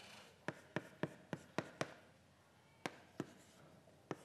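Chalk writing on a blackboard: about eight faint, sharp taps and strokes, with a short pause about two seconds in.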